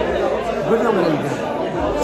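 Speech only: men's voices talking, with overlapping chatter.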